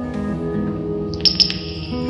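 An acoustic guitar and a solid-body electric guitar improvising jazz together, with overlapping sustained notes and changing chords. A high, bright ringing tone enters just past a second in and holds.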